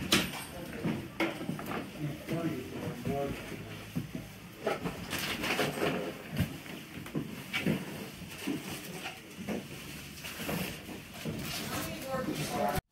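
Indistinct chatter of several people talking in nearby rooms, with a few short knocks and clicks of handling here and there, the sharpest one right at the start.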